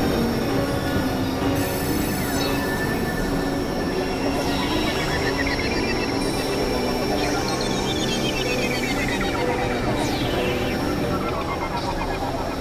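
Experimental electronic drone music: a dense, steady synthesizer drone with industrial noise, crossed about three times by high sweeping tones that bend in pitch.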